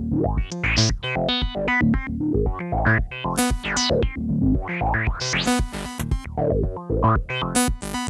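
Eurorack modular synthesizer playing a sequenced pattern. A WMD Basimilus Iteritas Alter drum voice plays short pitched percussive notes, its pitch stepped by a Mimetic Digitalis sequencer, over a steady low kick. Bright rising sweeps come every couple of seconds.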